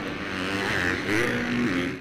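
Dirt bike engine revving as it rides through a corner on a Supercross track. The pitch rises and falls a couple of times with the throttle, and the sound fades out at the very end.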